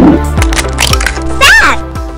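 Outro jingle music with held tones, broken by a few sharp clicks and a short call that bends up and then down in pitch about one and a half seconds in.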